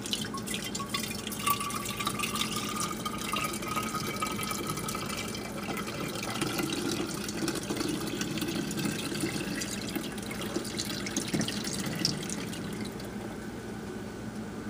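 Warm milk-and-cream creamer poured in a steady stream from a metal saucepan through a plastic funnel into a glass bottle, the bottle filling as the liquid runs in. The stream thins near the end.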